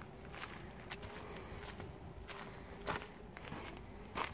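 Footsteps of a person walking on sandy dirt ground, faint and unevenly spaced, with a faint steady hum behind them.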